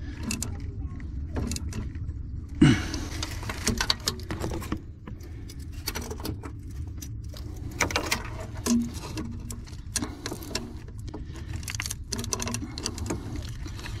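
Irregular metallic clicks and clinks of hand tools and bolts as the mounting bolts of a new OMC stringer tilt motor are tightened, over a steady low rumble.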